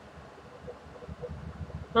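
Faint, uneven low rumble of room background noise in a pause between words, with a voice starting right at the end.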